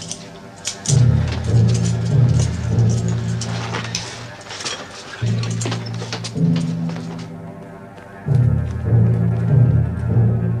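Dramatic television underscore: low sustained notes in three swelling phrases, with sharp clicks and hits over the first two-thirds.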